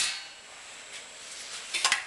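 Small sheet-metal pan clinking and clattering briefly as it is handled and laid over a gauge, in a short burst of sharp metallic clicks near the end.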